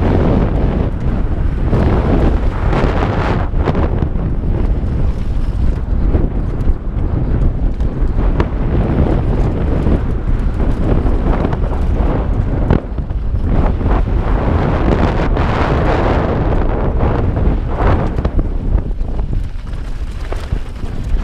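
Wind buffeting a helmet-mounted GoPro's microphone as a mountain bike descends a dirt trail at speed, mixed with the rumble of tyres on loose, freshly cut dirt and frequent short rattles and knocks from the bike over bumps.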